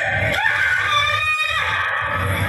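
A girl's high-pitched, drawn-out scream lasting about a second, an acted cry of distress.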